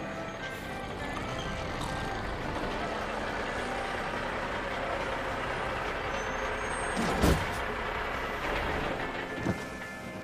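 Semi-truck engines running in a steady rumble, with a short, loud air-brake hiss about seven seconds in as a big rig stops.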